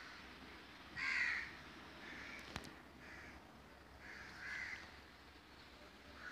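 A bird calling repeatedly, about five separate calls, the loudest about a second in. A single sharp click sounds about halfway through.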